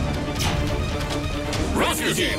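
Cartoon crash and impact sound effects with a heavy low rumble, over dramatic background music.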